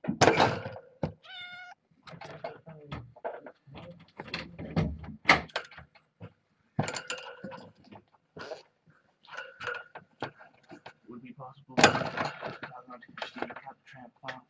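A kitten meowing once, briefly and high, about a second and a half in, among irregular knocks, rustling and small thumps of kittens and their things being handled.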